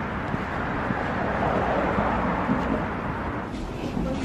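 Steady outdoor urban noise, like distant road traffic, with no distinct events.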